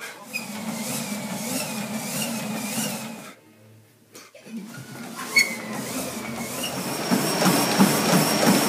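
Motorized treadmill running, a thin whine wavering in pitch over the belt noise, with a brief drop-out a little after three seconds in. Near the end, footfalls thud on the belt in a steady rhythm.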